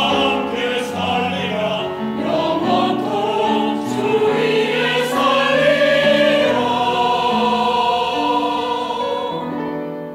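Church choir singing a Korean anthem in sustained phrases, growing quieter near the end.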